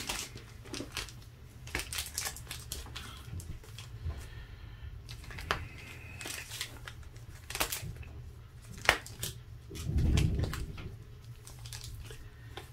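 Sealed Pokémon booster pack wrappers crinkling as they are handled and shuffled between the hands, with scattered sharp crackles and clicks. A brief low bump comes about ten seconds in.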